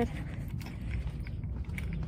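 Low rumbling handling noise on a handheld phone's microphone while the holder walks, with faint scattered taps and clicks.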